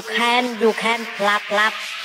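Music from a budots dance remix at a breakdown: a singing voice in short phrases, with no beat or bass underneath.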